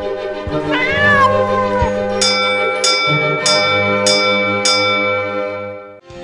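A single cat meow, rising then falling in pitch, over steady background music, followed by five bright chime strikes about half a second apart.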